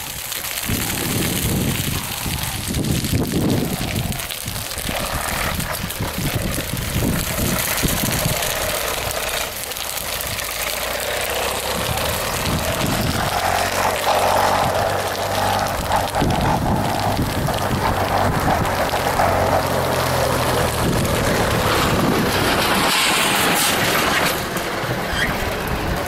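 A motorcycle engine running under steady, rough wind noise on the microphone; the engine's hum stands out most clearly from about halfway through.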